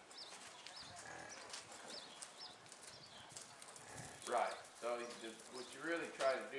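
A horse's hoofbeats in soft arena dirt as the young quarter horse mare moves after the calf, with light clicks. A man's voice comes in from about four seconds on.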